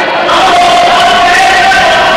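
Spectators shouting and cheering at a wrestling match, a steady loud din with several long, drawn-out yells held over it.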